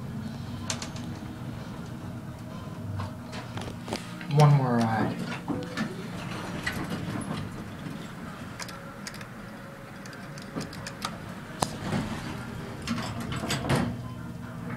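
Ride noise inside a descending Westinghouse traction elevator car: a steady low hum with scattered light clicks. A brief, loud, voice-like sound falling in pitch comes about four and a half seconds in, and a run of clicks and knocks comes near the end as the car reaches the lobby.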